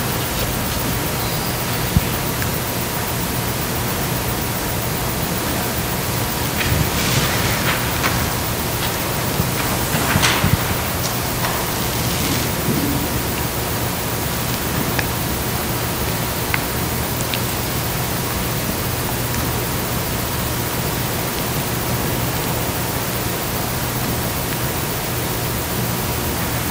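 Steady hiss with a faint low hum. A few faint rustles and clicks come through about seven and ten seconds in.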